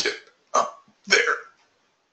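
A man's voice making three short, mumbled vocal sounds about half a second apart, not clear words; the last is the longest.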